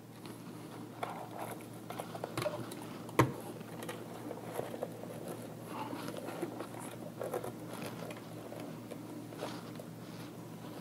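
Hands handling an ATX power supply's loose wires, braided cable sleeving and plastic zip ties: a run of small rustles and clicks, with one sharp click about three seconds in.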